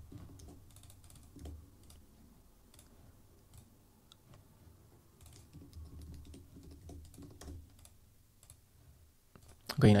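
Faint computer keyboard typing and clicking: irregular light key taps in short runs.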